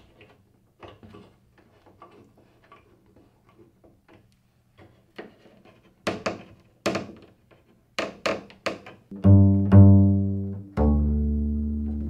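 Faint clicks and knocks from the double bass's plastic bridge adjusters being turned and the instrument being handled, growing louder after about six seconds. Near the end come two low plucked open-string notes on the double bass, each dying away, as the slackened strings are tuned back up.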